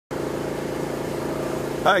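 A car engine idling with a steady, even hum.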